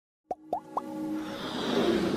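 Electronic intro sting: three quick pops, each gliding up in pitch, about a third, a half and three-quarters of a second in, then a synth tone that swells steadily louder.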